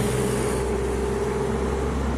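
A steady low vehicle drone: an even hum with a faint held tone above it, unchanging throughout.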